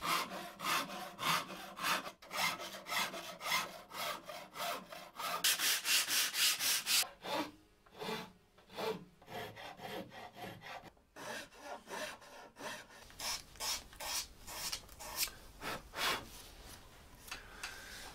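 Hand tools rasping and shaving along a wooden guitar neck as its facets are carved down to a rounded profile: repeated strokes about two a second, with a dense run of quicker strokes about six seconds in.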